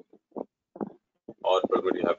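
Speech only: a voice talking in short, broken bits, turning louder and more continuous from about halfway through.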